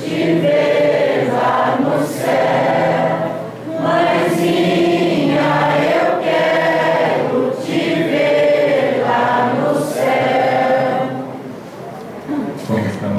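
A group of people singing a Christian hymn in Portuguese together, in long held phrases with short breaths between them; the singing fades out near the end.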